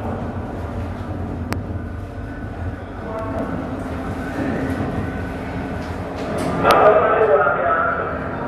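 Steady low rumble under indistinct voices, which grow louder about seven seconds in, with two short sharp clicks, one early and one near the end.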